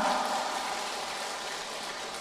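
Steady, even hiss of room noise with no pitch, easing off slightly in the first half second and then holding level.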